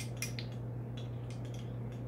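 A few light clicks and taps from a glass measuring cup being handled, over a steady low hum.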